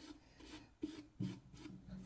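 Flat bristle paintbrush scratching against a painted wooden jack-o-lantern in quick, faint back-and-forth strokes, about three a second.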